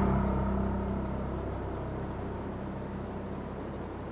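A low, sustained rumbling note from the film's score, starting with the cut and slowly fading away.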